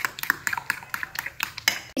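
A metal spoon clicking and tapping against the sides of a glass bowl while stirring pancake batter, several quick irregular taps a second.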